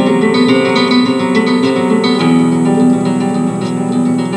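Solo classical guitar playing: a steady stream of plucked notes ringing over one another.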